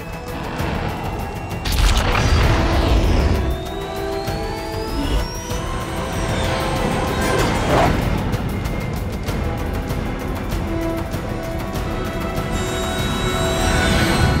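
Tense orchestral film score with sustained chords, with sound effects laid over it: a heavy boom about two seconds in and a rising whine a few seconds later.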